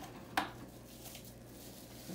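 Faint handling noise from a cardboard box being pushed across a stone countertop and a bubble-wrapped package being handled, with one brief sharp sound about half a second in.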